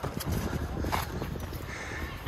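Footsteps on a rocky, gravelly dirt trail while climbing uphill, a few separate steps, the clearest about a second in, over a low steady rumble.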